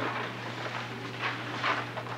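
Room noise from players and audience before the music starts: scattered short rustles and knocks over a steady low electrical hum.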